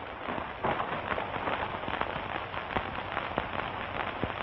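Crackling hiss of a worn old film soundtrack, with scattered faint clicks and pops throughout and no dialogue.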